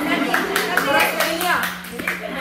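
A small group clapping with scattered hand claps while women's voices call out and cheer over them.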